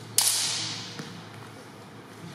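Practice swords clashing: one sharp crack about a fifth of a second in that echoes around the gym hall and dies away over about half a second, then a faint knock about a second in.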